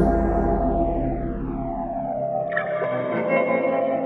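The closing bars of an edited song: sustained, effects-heavy instrumental chords with long downward-sweeping tones, fading steadily. A brighter layer of tones comes in just past the halfway point.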